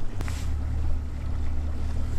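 Steady low rumble of wind buffeting an outdoor camera microphone on an open fishing boat, with a single click about a quarter second in.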